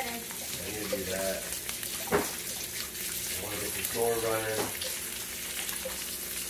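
Eggs frying in a nonstick pan, a steady sizzle of hot oil, with one sharp click about two seconds in.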